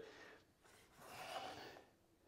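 Near silence, with one faint, soft rushing sound lasting under a second, about a second in.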